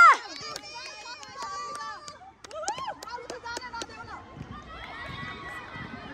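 Girls shouting and calling to each other across an outdoor football pitch during play, several voices overlapping at a distance, with a loud shout cutting off just at the start and a few sharp knocks.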